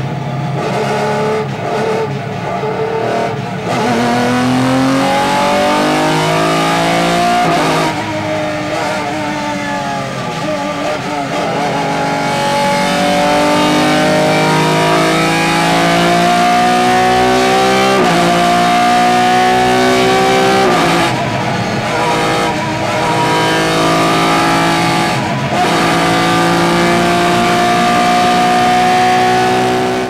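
Jaguar touring car's race engine heard from inside the cockpit, pulling hard through the gears. Its note climbs steadily and then drops sharply at each upshift, about five times.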